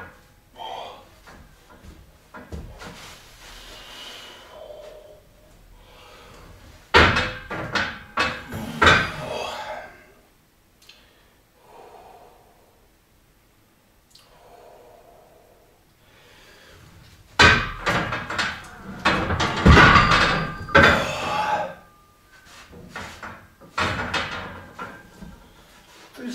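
A man straining through a heavy pull on a bar in a power rack: forceful breaths and grunts in two loud bouts, about seven seconds in and again from about seventeen seconds, mixed with thuds of the loaded bar.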